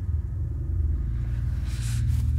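Low, steady ominous rumble from a horror film's soundtrack, with a short hissing swell near the end.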